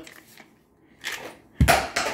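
Old plastic Chrysler 3.6 oil filter housing with its oil cooler set down on a workbench: a faint scrape about a second in, then a sharp, loud knock with a brief clatter near the end as the plastic housing hits the bench.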